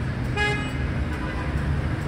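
A single short vehicle horn toot about a third of a second in, over steady street-traffic rumble.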